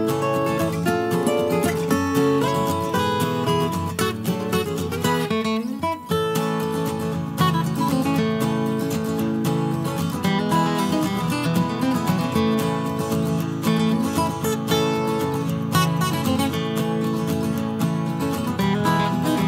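Background music: acoustic guitar strumming, with a brief break about six seconds in.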